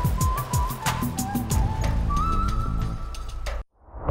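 TV news segment jingle: electronic music with a fast ticking beat, a high melody line and falling bass sweeps. The ticking stops about a second and a half in, and the music cuts off abruptly just before the end.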